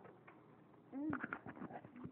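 A short wordless vocal sound about a second in, its pitch rising and falling, followed by a few sharp clicks and rustles of the device being handled close to the microphone.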